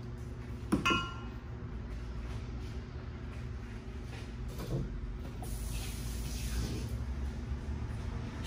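A small glass cup set down on the counter with a single sharp clink and a short ring about a second in, over a steady low hum. A fainter knock follows near the middle.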